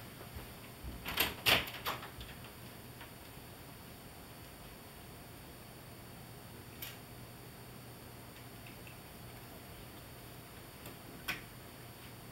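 A few sharp clicks and knocks in a quick cluster about a second in, then single clicks past the middle and near the end, over a steady low electrical hum in a small room.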